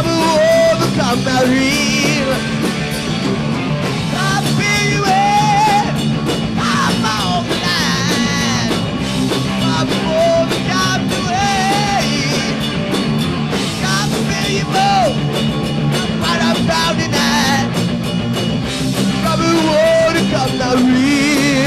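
Live heavy metal band playing loud: distorted electric guitars, bass and drums, with a wavering high vocal or lead line over the top.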